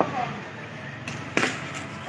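A single sharp crack of a cricket bat striking the ball, about one and a half seconds in, over low street background noise.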